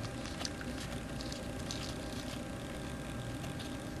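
Steady low hum and hiss with a few faint clicks as a compact digital camera is twisted by hand onto a screw bolt.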